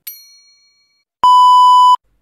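A single high electronic ding that rings away within about half a second, then, just over a second in, a loud steady censor-style bleep held for under a second and cut off sharply.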